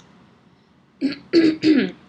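A woman clearing her throat in three quick rasps, starting about a second in.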